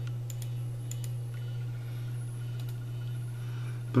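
Steady low hum of a running desktop computer, with a few faint mouse clicks in the first second.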